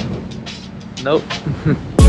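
A man's voice saying a short word and laughing, over a faint steady hum.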